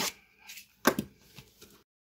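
Hands handling a cardboard trading-card box on a table: faint rustling and one sharp knock about a second in, then the sound cuts out to dead silence near the end.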